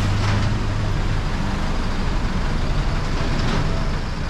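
Flatbed tow truck's engine running steadily, a low rumble, with street traffic around it.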